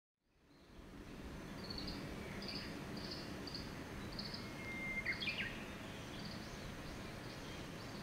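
Birds chirping among trees, fading in over the first second: a series of short high chirps, with a held whistled note followed by a quick run of falling notes around the middle. Under them is a steady low background rumble.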